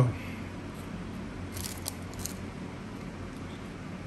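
A few brief, faint brushing scrapes of a stack of 1990 Score football cards being handled in the hands, over a steady low hum.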